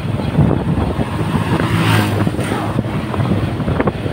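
Vehicle engine and road noise heard while travelling along a street, steady throughout, with a louder swell about halfway through.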